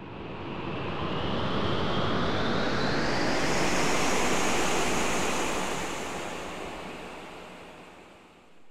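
A long rushing noise, like wind or surf, that swells up over the first few seconds, with a hiss rising in pitch, then fades away near the end.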